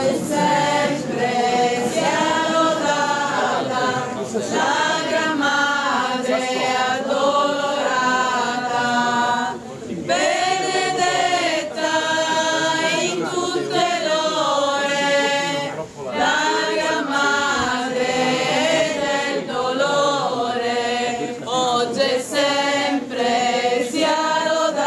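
A crowd of many voices singing a slow religious hymn together, unaccompanied, in long held phrases with brief pauses about ten and sixteen seconds in.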